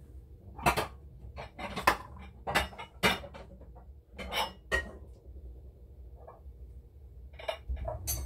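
Heavy glass Pyrex mixing bowls clinking and knocking against each other as they are lifted from a stack. There are several sharp clatters, loudest in the first three seconds, then a few more, and two near the end.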